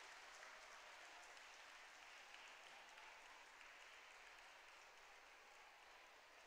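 Faint, steady applause from an audience, slowly fading.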